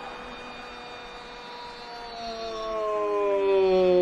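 A Spanish-language football commentator's drawn-out goal cry: the tail of one long held 'gol' fades in the first two seconds, then about two seconds in a second long sustained cry begins, growing louder as its pitch slides slowly down.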